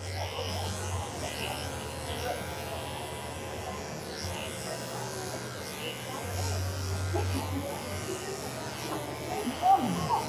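Cordless electric dog clippers buzzing steadily as the blade is run back over a doodle's coat, the hum growing louder in the first second and again for about a second and a half around two-thirds of the way through.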